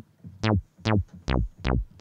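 Revolta 2 FM software synth playing a low-pass pluck patch: four short notes in quick succession, each starting bright and quickly going dull as the filter envelope closes, with the filter resonance turned down.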